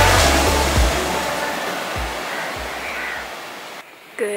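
Background music fading out over a steady wash of surf breaking on a beach. The surf gradually gets quieter and cuts off just before the end.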